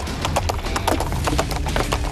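Hoofbeats of horses cantering on grass: a quick, uneven run of hoof strikes on the turf.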